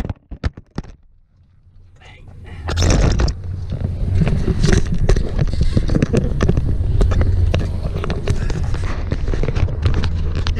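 Camera-handling noise: knocks, clicks and rubbing as a suction-cup camera mount comes off the truck's windshield and is pressed back on. Under it runs the steady low hum of the truck's engine. The sound drops almost to nothing for a second or so early on, then the knocking picks up again.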